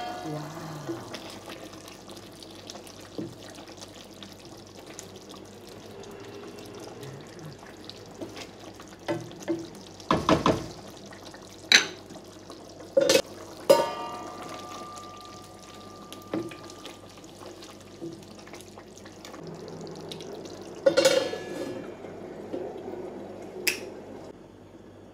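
A stainless steel pan lid and a wooden spoon against a pan of simmering meat sauce: a few sharp knocks and clatters, one leaving a short metallic ring, over a low steady kitchen background.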